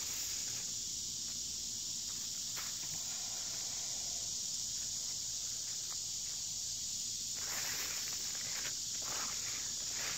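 Steady high-pitched chorus of insects. Light rustling comes in during the last couple of seconds.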